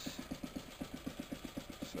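Small single-cylinder Suffolk Iron Foundry 75G14 stationary engine running steadily at a slow idle, a regular low beat of about ten firing pulses a second.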